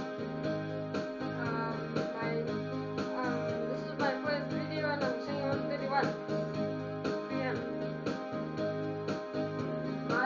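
Electronic keyboard playing a steady, regularly pulsing chord accompaniment, with a boy's voice singing a hymn over it from about a second and a half in.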